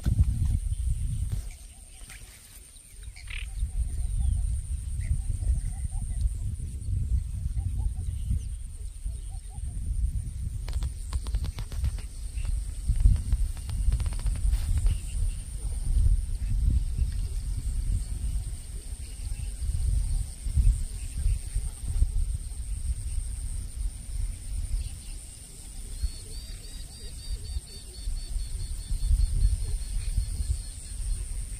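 Wind buffeting the microphone beside open water: an uneven low rumble that rises and falls in gusts, with a few faint clicks and a faint, rapid high chirping near the end.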